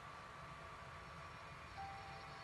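Faint, steady low rumble, like the background hum of re-recorded footage. Near the end a soft held musical note begins.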